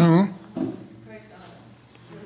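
A man's voice trailing off and a throat clear in the first half second, then a lull of quiet room tone with a faint voice.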